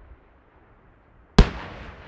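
An aerial firework shell bursts with a single sharp, loud bang well into the second half, followed by a fading rumble of echo.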